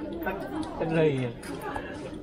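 Indistinct chatter of people talking, with one voice rising louder about a second in.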